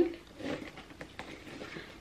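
Faint rustling and light ticks as a handbag and its braided drawstring are handled and lifted.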